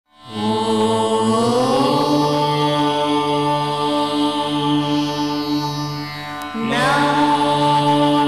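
Indian devotional intro music with sustained, drone-like tones. There is a short break about six and a half seconds in, then a new phrase begins.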